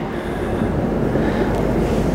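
Steady low rumbling background noise with a faint hiss on top, with no distinct events in it.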